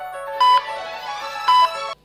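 Recorded backing music for a stage mime: a light keyboard melody of short notes, broken twice by loud, high electronic beeps about a second apart. The track cuts off suddenly at the very end.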